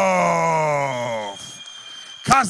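A man's long, drawn-out cry, one unbroken held voice sliding steadily down in pitch and dying away about a second and a half in.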